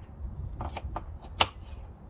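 Kitchen knife chopping carrot on a wooden chopping board: several quick strokes, each a sharp tap of the blade through the carrot onto the board, the loudest about one and a half seconds in.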